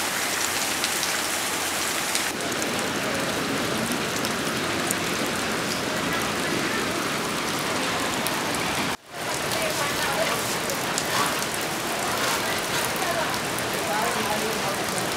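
Steady rain falling and pattering on the ground and roofs, with a brief break in the sound about nine seconds in.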